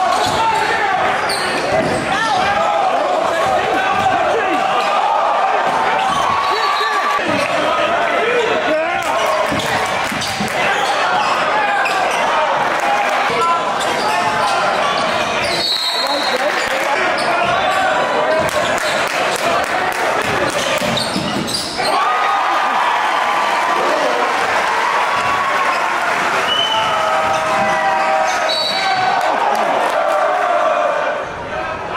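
A basketball being dribbled and bouncing on a hardwood court in a large gym, under the constant chatter of a crowd of spectators.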